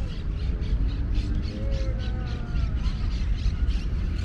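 Outdoor ambience in a tree-lined plaza: wind rumbling on the camera microphone, with a quick run of short light clicks about three a second and faint distant calls that glide down in pitch.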